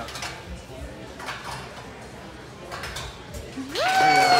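A few faint metallic clinks from swinging gym rings and their hardware over a busy gym background, then a spectator's cheer rising sharply in pitch near the end.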